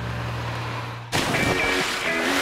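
Background music holding a low sustained chord. About halfway through, a sudden loud blast cuts in and starts a jingle with bright high tones.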